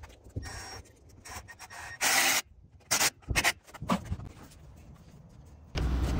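Cordless drill-driver with a nut setter running in short bursts to tighten worm-drive hose clamps on the pump's barb fitting. The loudest burst comes about two seconds in, followed by several shorter ones about a second later.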